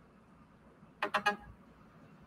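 Three quick electronic beeps about a second in, a device's notification tone.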